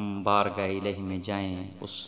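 Speech only: a man delivering a sermon.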